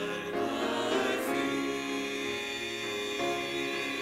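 Mixed choir of men's and women's voices singing in harmony, holding long chords that change every second or so.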